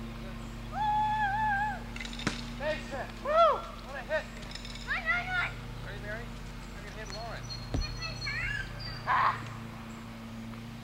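Young children's high-pitched calls and shouts, one held for about a second and others rising and falling, with two sharp knocks, over a steady low hum.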